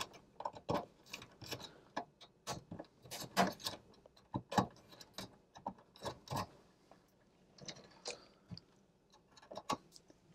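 Light, irregular clicks and small scrapes of wires being pulled off an alarm control panel's terminal strip and handled.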